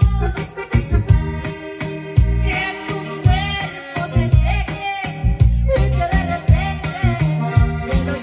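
A woman singing into a microphone, amplified through loudspeakers, over musical accompaniment with a strong bass line and a steady beat.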